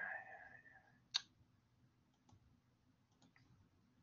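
A single sharp computer-mouse click about a second in, followed by near silence with a few faint ticks.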